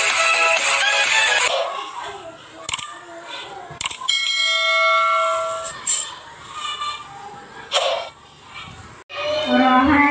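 An intro jingle that ends about one and a half seconds in, then the sound effects of a subscribe-button animation: a few clicks and a bell-like chime. Near the end a group of children start singing into a microphone.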